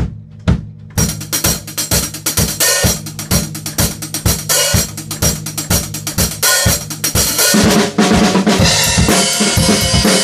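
Acoustic drum kit playing a rock song's drum part. It opens with a few evenly spaced low drum hits, then about a second in the full kit comes in with cymbals and snare. The playing grows louder and busier, with washing cymbals, near the end.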